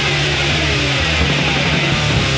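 Crust punk recording: heavily distorted electric guitar and bass holding low notes under the fading wash of a crash cymbal.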